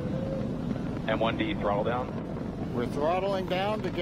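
Falcon 9 rocket's nine Merlin 1D engines during ascent, a steady low rumble carried on the live launch broadcast's audio.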